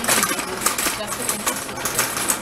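Metal shopping cart rattling as it is pushed along the store floor: a fast, irregular clatter of small metallic clicks.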